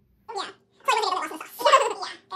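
A woman's voice making sounds without clear words: a short one, then a longer, louder one.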